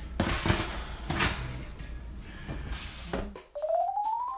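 Several knocks and rustles from a metal oven rack and aluminium foil as pizzas are pushed into the oven, over a low steady hum. Near the end this cuts to a rising electronic tone that leads into keyboard music.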